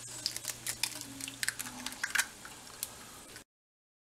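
Eggs frying in oil in a nonstick skillet with dried minced onion and garlic: scattered sharp crackles and pops over a low steady hum, cutting off suddenly about three and a half seconds in.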